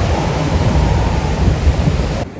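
Ocean surf washing over a rocky shore in a loud, steady rush, with heavy wind rumble on the microphone.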